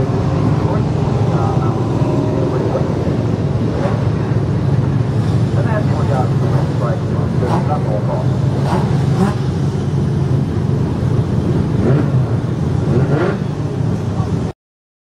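V8 dirt-track sedan engines running at low revs in a steady rumble, with a few short rises in revs. Voices are heard faintly over them.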